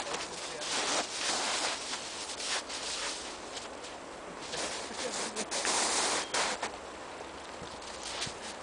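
Snow being crunched and scuffed in several noisy bursts, the strongest about a second in, around two and a half to three seconds, and around six seconds.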